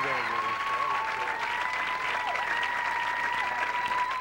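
Studio audience applauding, with a steady high whine held through the applause that dips briefly a couple of times.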